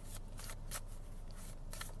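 Tarot cards being handled and shuffled: a quick run of short, crisp swishes and flicks, about six in two seconds.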